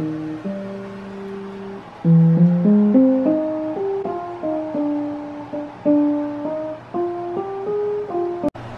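Digital piano played by hand: a slow melody of single notes and chords, each struck and left to ring. From about two seconds in the notes climb in steps and the playing gets louder.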